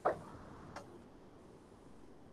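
Two short clicks over a faint steady background hiss. The first click, right at the start, is the louder; the second, about three-quarters of a second in, is faint and sharper.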